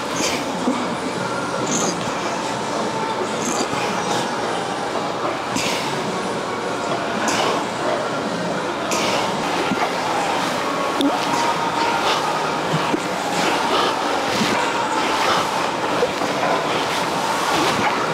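Steady, dense gym room noise, with scattered faint clicks.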